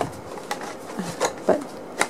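Paper and card being handled and set down on a table: soft rustling with a few light taps about half a second apart.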